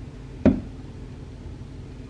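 A single short knock about half a second in, over a low steady room hum.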